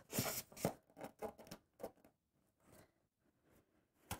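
A bamboo skewer being pushed through holes in the sides of a corrugated cardboard box: several faint scrapes and clicks in the first two seconds.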